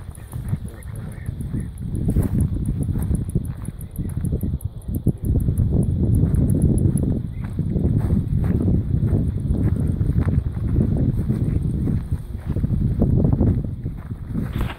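Wind buffeting the microphone, a low rumbling noise that rises and falls in gusts, with footsteps on a dirt track.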